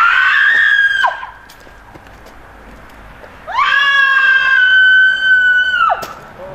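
A woman screaming twice, very high-pitched and loud: a shrill scream that has risen in pitch and breaks off about a second in, then after a short pause a second scream held at one high pitch for over two seconds that cuts off suddenly near the end.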